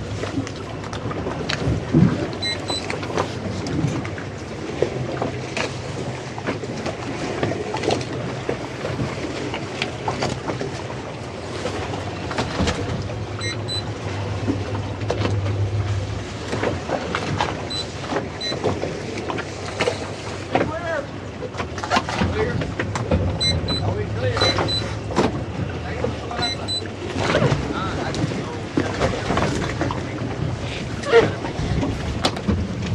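Twin Suzuki 300 outboard motors running at low throttle on a towboat holding a towline to a grounded cruiser, a steady low hum that swells for a couple of seconds midway.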